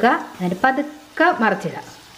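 A gujiya sizzling as it deep-fries in hot oil in a wok. Over the sizzle, a voice is heard in three short phrases.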